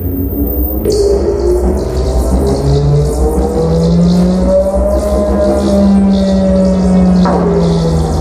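Modular synthesizer playing electronic music: sustained tones glide slowly up in pitch and back down again over a steady deep drone, with a hissing noise layer on top.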